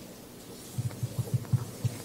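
A quick, uneven run of soft, low thumps picked up by a microphone, starting about a second in, over quiet room tone.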